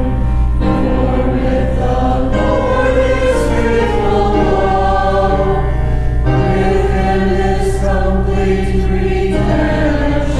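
Choir singing a psalm in slow, sustained chords that change every couple of seconds, over a steady low drone.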